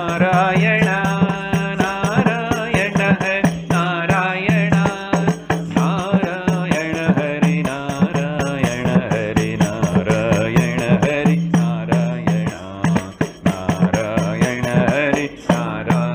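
A man singing a devotional kirtan chant over a steady low drone, with regular beats from a hand-held frame drum.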